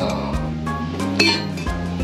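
Metal chimney pipe sections for a tent wood stove clinking against each other as they are handled, one knock ringing briefly about a second in. Background music plays throughout.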